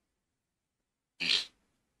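Silence, then about a second in a single short, sharp breathy burst from the man's voice: a quick exhaled breath rather than a word.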